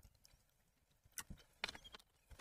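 Water poured from a glass bottle into a drinking glass, heard as a few faint, short splashes and clicks, with a small cluster of them past the middle.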